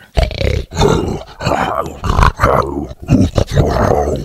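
Tiger roaring and growling, a string of about six rough roars one after another.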